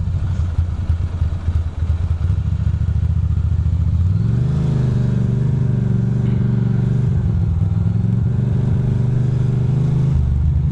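2006 Ducati Monster 620's air-cooled L-twin engine running at low revs with an uneven note while creeping between cars, then rising in pitch about four seconds in and holding a steady higher note as the bike accelerates into the open lane.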